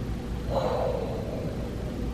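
A woman blows out a long exasperated breath through pursed lips, starting about half a second in and lasting about a second, over a steady low background hum.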